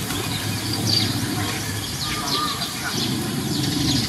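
Small birds chirping, a series of short falling chirps repeated every half second or so, over a steady murmur of distant voices.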